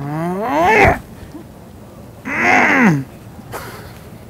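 A man's voice making two drawn-out wordless sounds: the first slides steeply upward in pitch, and the second, about a second later, rises and then falls.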